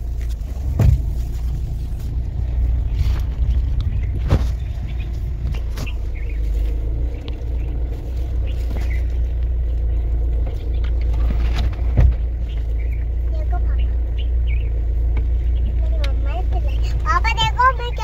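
Low steady rumble of a Hyundai Creta heard from inside its cabin while it is in reverse gear, with a few sharp knocks about one, four and twelve seconds in.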